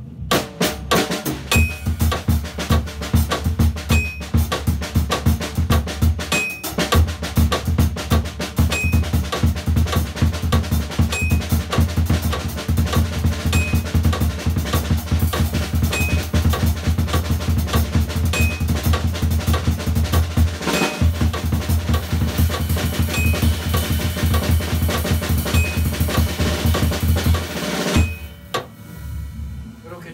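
Drum kit played continuously in paradiddle stickings, the four paradiddle patterns mixed freely across snare, toms, bass drum and cymbals, over a metronome at 100 BPM. The metronome's high click is heard about every two and a half seconds. The playing stops near the end.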